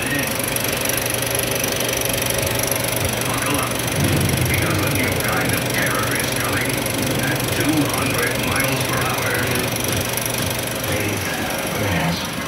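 35mm film projector running, its mechanism giving a steady mechanical whir. The trailer's soundtrack plays under it, with wavering voice-like sounds rising and falling in pitch from about four seconds in.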